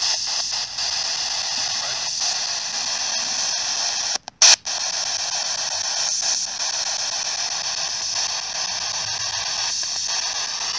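Spirit box radio scanning with its aerial pushed down: a steady hiss of radio static. About four seconds in it briefly cuts out around one short, loud burst.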